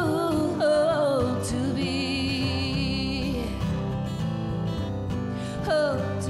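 Live acoustic guitars playing under a woman's singing voice, which holds long notes with a wavering vibrato. The voice slides down in pitch about a second in and again near the end.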